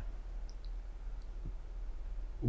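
A pause between speech: room tone with a steady low hum, and a couple of faint short clicks about half a second in.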